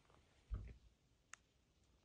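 Faint handling noises over near silence: a soft low thump about half a second in, then a single sharp click.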